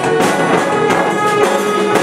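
Jazz big band playing: saxophones, trombones and trumpets holding chords over percussion that keeps a steady beat of about three strokes a second.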